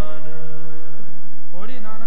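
Sikh kirtan: harmoniums hold a steady sustained chord, with no drum strokes. A singing voice comes back in about a second and a half in, with a rising phrase.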